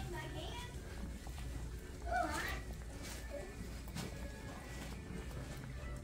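Indistinct background voices of other people in a large store, including a high child's voice about two seconds in, over a steady low hum.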